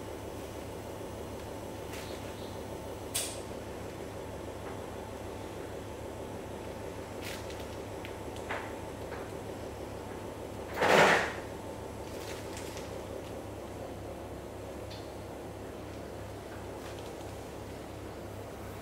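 Quiet kitchen room tone with a steady low hum, a faint click about three seconds in, and one short, louder rush of noise about eleven seconds in.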